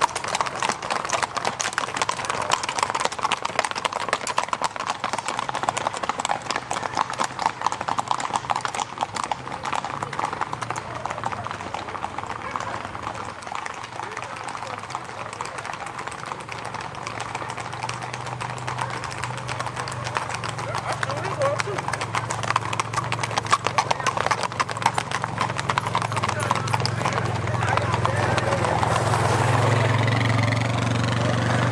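Many horses' hooves clip-clopping on an asphalt road as a group of riders passes, a dense run of overlapping hoof strikes. In the second half a low vehicle engine hum builds and grows louder toward the end as a pickup truck follows the horses.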